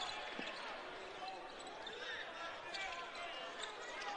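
A basketball being dribbled on a hardwood court, faint, with a few faint distant voices from the court over a low arena hum.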